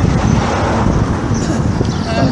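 Loud, gusty low rumble of wind buffeting an outdoor microphone, with no singing.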